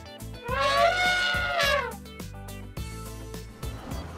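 An elephant trumpeting sound effect: one call of about a second and a half that rises and then falls in pitch, over cheerful background music.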